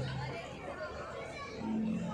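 Indistinct chatter of several people's voices.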